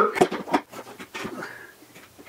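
A few short knocks and clicks as a Vespa side cowl is pressed and worked down onto the scooter frame, then quieter handling.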